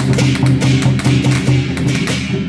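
Temple procession percussion music: drum, hand cymbals and clapper struck in a fast, even rhythm of about six or seven beats a second, over a low held tone.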